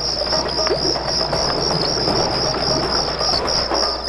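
High-pitched chirping in a fast, even pulse, like crickets, over the crackle of a fire.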